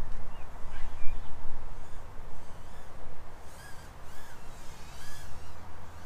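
Birds calling: a few short chirps near the start, then a series of arched, repeated calls through the middle. Underneath, a gusty low rumble of wind buffeting the microphone.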